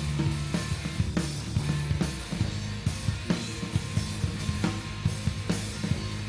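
Live rock band playing an instrumental passage without vocals: a drum kit with kick, snare and cymbals keeping a steady beat under electric guitars and a sustained low line.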